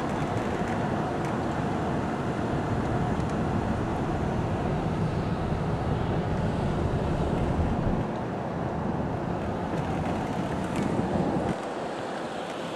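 Road and engine noise heard inside a moving car: a steady rumble that eases about eight seconds in and drops off sharply near the end.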